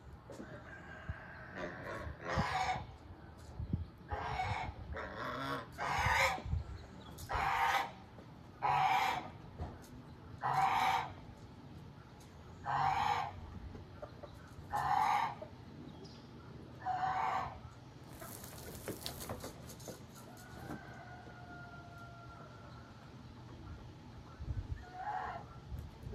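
Chickens calling: a series of about ten short, loud squawks, one every one to two seconds, then a brief hiss about two-thirds of the way through.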